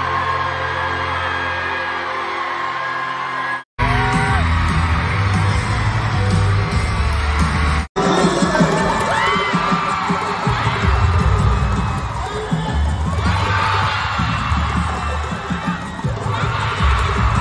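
Live band music in an arena, recorded from among the audience, with fans screaming over it. It opens on a held chord, then a heavy pulsing bass beat; the sound drops out abruptly twice, about four and eight seconds in.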